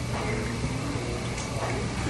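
Restaurant background din: faint chatter of other diners over a steady low hum.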